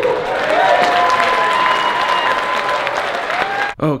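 Audience applauding in a large banquet hall, with a drawn-out cheer from someone in the crowd over the clapping. The applause cuts off just before the end.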